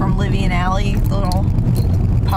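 A woman talking inside a car, over the steady low rumble of the car's cabin.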